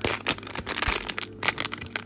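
A sealed white foil plastic blind-box bag crinkling and crackling in the hands as it is worked and torn open, a dense run of sharp crackles.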